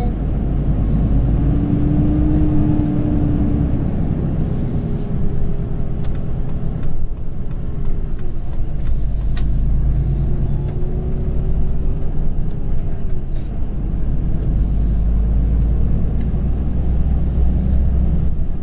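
A Volvo FH16 750's 16-litre straight-six diesel pulling steadily at 44 tonnes, heard from inside the cab as a continuous low drone with road noise. A faint whine in the drone settles at different pitches a few times.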